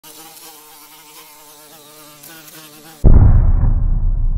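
A faint, wavering insect buzz sound effect. About three seconds in, a sudden, very loud deep boom hit cuts it off and rings on as a low rumble, the sound of an animated logo intro.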